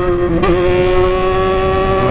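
Yamaha XJ6's inline-four running through a muffler-less straight-pipe exhaust under hard acceleration. There is a brief break in the note about half a second in as a gear is shifted, then a steady high-revving tone as it pulls in the next gear.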